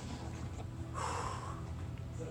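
One forceful, noisy breath from a person about a second in, over a steady low hum.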